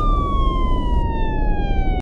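A siren tone sliding slowly and steadily down in pitch over a low rumble. The hiss above the tone cuts out about a second in.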